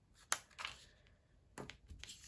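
Light clicks and rustles of fingers picking adhesive epoxy dots off their clear plastic backing sheet and pressing them onto a paper card, the sharpest click about a third of a second in.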